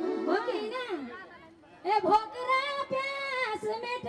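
A woman singing lok dohori into a microphone over a PA, in long held notes, with overlapping voices chattering in the first second. The singing drops away for a moment about a second in and comes back strongly about two seconds in.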